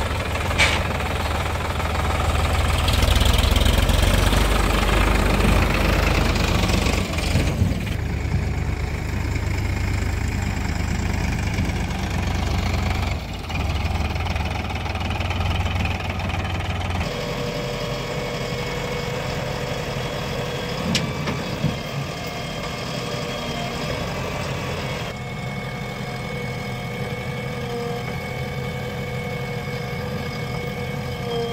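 Diesel tractor and backhoe loader engines running, a strong low rumble through the first half. About halfway through it changes abruptly to a quieter, steadier engine hum.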